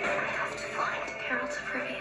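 Film trailer soundtrack playing back: steady background music with faint voices over it.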